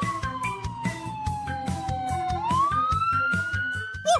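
Police siren in a slow wail: a single tone that falls for a little over two seconds, then rises again. Background music with a steady beat plays underneath.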